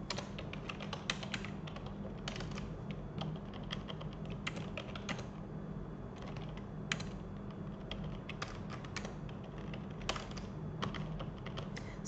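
Typing on a computer keyboard: irregular runs of key clicks with short pauses between them, over a low steady hum.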